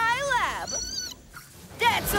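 A cartoon moth's squeaky cry: a whining call that slides down in pitch, then a few short high squeaks just before a second in.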